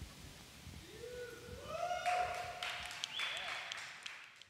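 A quiet person's voice, its pitch rising about a second in and then held, with a breathy hiss over it from about two seconds in.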